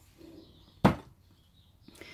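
A plastic paint bottle set down on a hard work surface: one sharp knock a little under a second in, with faint handling noise before it.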